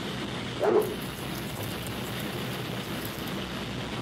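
Steady room noise, with one short, louder sound a little under a second in.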